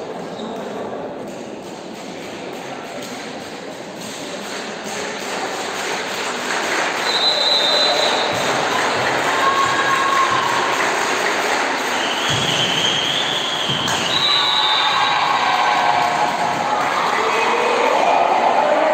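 Echoing sports hall during a volleyball rally: crowd and player voices build from about four seconds in, with a few sharp ball hits and short high-pitched squeaks. The noise stays loud after the point is won.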